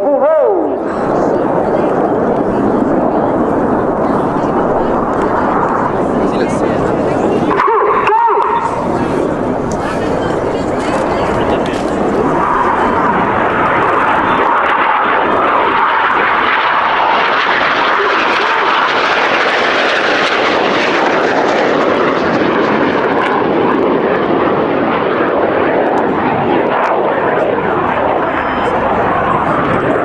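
Red Arrows BAE Hawk T1 jets passing in a display, their Adour turbofan engines making a steady jet noise. The noise breaks off briefly about eight seconds in, then swells to its loudest in the middle as a jet goes by and eases off toward the end.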